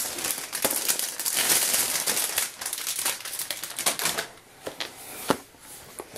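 Packaging of a boxed scrapbook chipboard pack crinkling and rustling as it is handled, dying down after about four seconds to a few light clicks and taps.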